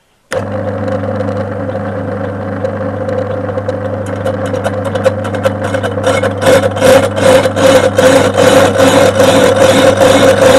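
Metal lathe switched on, its motor starting suddenly and running with a steady hum as the faceplate-mounted cast-iron brake disc spins up. From about four seconds in, a rapid, regular scraping chatter grows louder as the carbide tool begins skimming the rusty edge of the disc.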